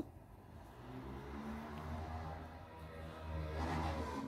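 A low, steady motor hum that swells in about a second in and holds.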